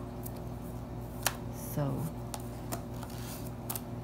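Handling of a black leather iPad folio case as it is closed and its strap is pulled over the front: a few sharp clicks and taps, the sharpest a little over a second in.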